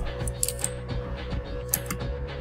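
Quiet background music with steady low tones, and a few sharp clicks of a computer mouse, a pair about half a second in and another pair near the end.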